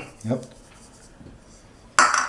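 Faint dry rustle of salt being sprinkled over cubed raw pork in a steel pan, then a single sharp knock near the end as the small container is set down on the countertop.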